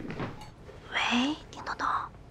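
Hushed, whispered speech, with a breathy hiss about a second in and a few quiet voiced syllables near the end.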